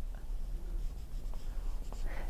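Marker pen drawing on a whiteboard: faint scratchy strokes, with a low steady room hum underneath.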